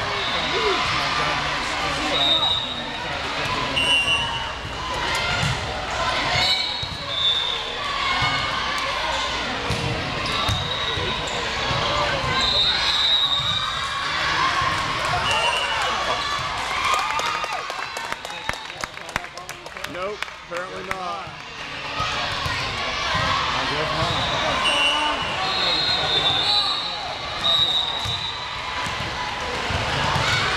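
A volleyball being bounced and struck during play on a gym court, heard over steady spectator chatter in a large hall, with short high squeaks scattered throughout and a quick run of sharp smacks a little past the middle.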